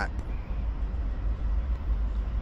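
Steady low rumble under an even outdoor hiss, with no distinct events.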